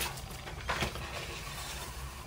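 Hands working a needle and thread through a paper sketchbook page: faint paper rustling with a few light ticks, one at the start and a couple about three quarters of a second in.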